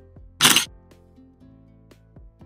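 Background music with a short, loud camera-shutter click about half a second in.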